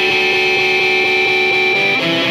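Rock band's instrumental intro: electric guitars play a repeated riff over the band, with a high note held steady throughout and no vocals.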